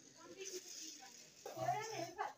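Faint voices in a room, ending in a short, drawn-out voiced sound that bends in pitch.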